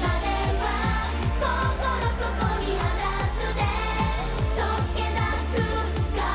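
A Japanese idol group of young women singing an upbeat pop song together into microphones over a band backing with a steady, driving beat.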